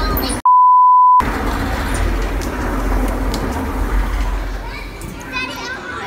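Rushing rumble of a rider going down an enclosed metal tube slide. About half a second in, a loud, steady electronic beep of under a second replaces all other sound. Near the end, children's high voices squeal.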